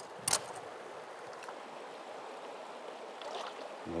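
Steady rush of river current flowing around a wading angler, with one short sharp noise just after the start.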